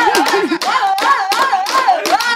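Gana song: men singing with a wavering, ornamented melody over a fast rhythm of about five strikes a second, made by hitting sticks.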